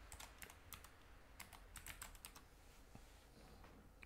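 Faint computer keyboard typing: a quick run of separate key clicks that dies out in the last second.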